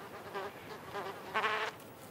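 Sand wasp's wings buzzing in flight, a wavering drone that grows louder for a moment about one and a half seconds in.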